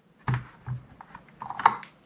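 A few scattered keystroke clicks on a Kinesis Advantage 360 keyboard with Cherry MX Brown key switches, irregular and soft, with the sharpest click near the end.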